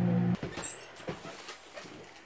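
An Emerson microwave oven's steady electrical hum stops abruptly about a third of a second in. A brief high squeak and scattered clicks and scuffs follow as a door opens and a dog goes out.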